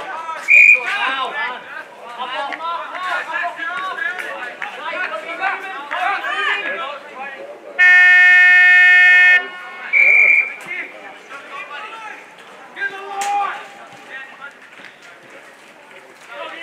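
Quarter-time siren at a football ground: one long, loud, steady horn blast of about a second and a half, over spectators' chatter and shouting. Short, shrill whistle blasts come just after the start and about a second after the siren.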